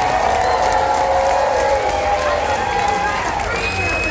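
Audience cheering and applauding, many voices whooping and shouting over clapping.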